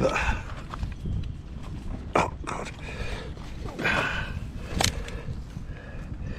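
Close handling noise as a freshly landed zander is dealt with in a landing net: rustling and a low rumble, a few sharp knocks about two, two and a half and five seconds in, and a short breath-like rush near four seconds.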